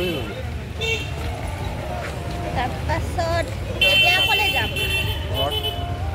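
People talking over a steady low rumble, with a brief steady high tone about four seconds in.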